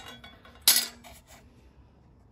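A sharp metal clink with a short ring as a steel rule is knocked against metal, followed by a couple of lighter ticks.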